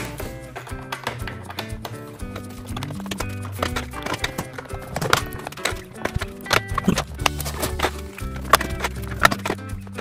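Background music: held notes over a bass line, with many short, sharp clicks running through it.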